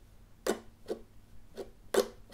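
Ukulele strummed in the six-stroke chorus pattern, down-down-up, up-down-up. The strokes are short and evenly spaced, about three a second.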